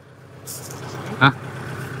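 Kubota L5018 tractor's diesel engine idling steadily.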